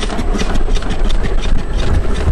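Compressed-air piston engine running at a steady speed with a rapid, even beat, turning its roller chain drive.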